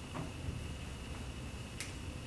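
A few light taps and a sharp click near the end, over a steady room hum with a faint high whine.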